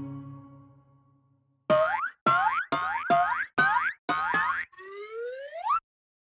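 The last chord of a children's song dies away. After a short silence come six quick rising cartoon "boing" sound effects, then one longer upward slide.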